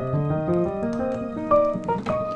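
Piano chords played slowly, beginning with a C minor 7 voicing over a B♭ bass, with new notes entering about every half second and ringing on under sustain.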